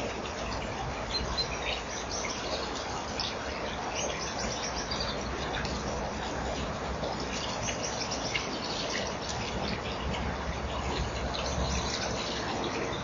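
Small birds chirping and twittering in the background, many short high calls coming in quick clusters, over a steady hiss and a low rumble.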